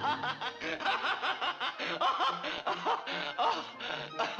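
Daffy Duck laughing: a long unbroken run of quick snickers and chuckles.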